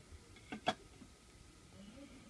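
Quiet room tone at a soldering bench, with two short clicks close together about half a second in.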